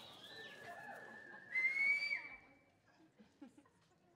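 Audience whistling and whooping: one long, high whistle that steps up in pitch and gets loudest about a second and a half in, then stops about halfway through, leaving only faint scattered noises in the hall.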